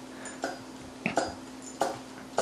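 Small glow-fuel nitro engine of an HPI Super Nitro RS4 being turned over by hand, giving three short puffs a little over half a second apart as it passes compression. The engine has good compression and turns freely.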